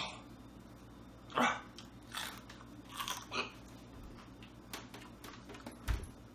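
Raw whole jalapeño peppers being bitten and chewed: a handful of short crunches at irregular intervals, the sharpest at the very start.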